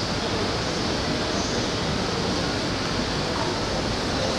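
Steady ambience of a railway station platform: an even rushing noise with no distinct events.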